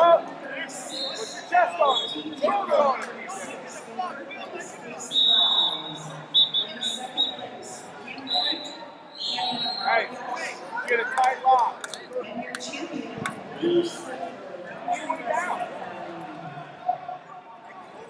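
Voices calling out and talking in a large, echoing hall. Several short, high referee whistle blasts come from the wrestling mats, one just before the middle, and there are a few sharp thuds.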